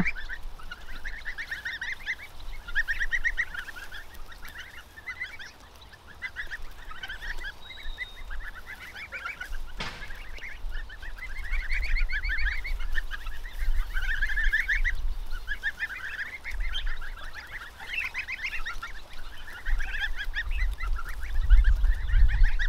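A flock of young goslings calling continuously: overlapping high, quick trilling peeps from many birds at once.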